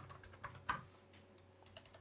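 Typing on a computer keyboard: a quick run of faint keystrokes in the first second, then a few more keystrokes near the end.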